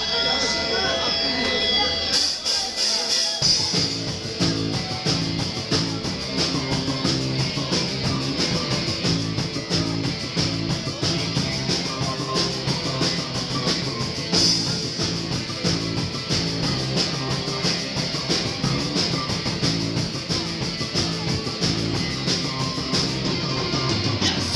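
Punk rock band playing live in a small club: electric guitar, bass and drum kit. The full band comes in about two to three seconds in and keeps up a steady, driving beat.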